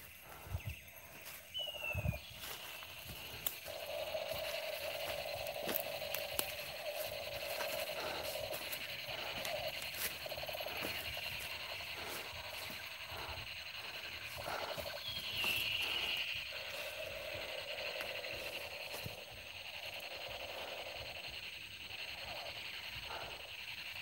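Night-time forest ambience: a steady high chirring of insects, with a lower buzzing trill that comes twice and lasts several seconds each time. Scattered scuffs and crackles come from footsteps on dry leaves and dirt.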